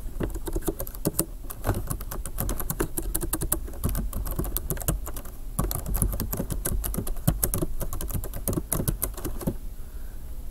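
Computer keyboard typing in quick, uneven runs of keystrokes, with a short break about halfway through.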